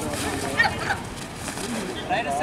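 Short shouts from kabaddi players and onlookers during a raid and tackle, over steady outdoor crowd noise.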